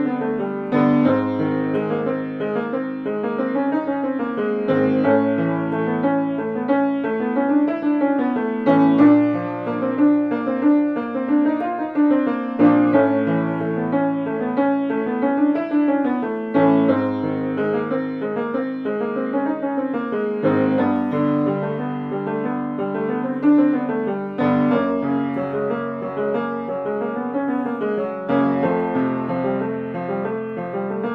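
Grand piano playing a short run of notes over a held bass chord, repeated about every four seconds on a new chord each time. It is the accompaniment pattern for a vocal agility warm-up exercise.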